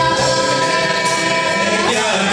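A mixed school choir singing a Hindi group song with live band accompaniment, the voices holding one long note that bends away near the end.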